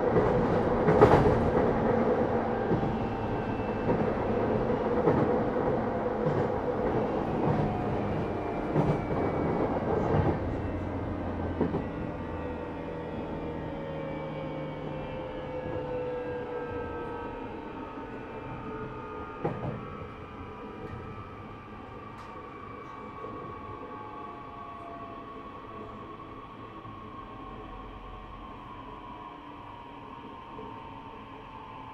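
JR East E131-600 series electric train running, heard inside the motor car: rumbling running noise with a few rail-joint clicks, and motor whine tones that slowly fall in pitch. The whole sound grows steadily quieter as the train eases off and slows.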